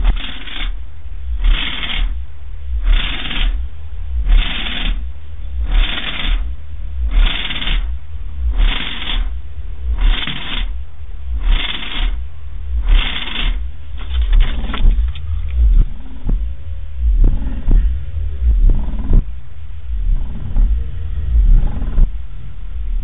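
Horror-film soundtrack played loud through a tapped-horn subwoofer with a Dayton 12-inch dual-voice-coil driver: a continuous very deep bass rumble under a hissing pulse that repeats about every one and a half seconds. About 14 seconds in, the pulses give way to irregular, scattered noises.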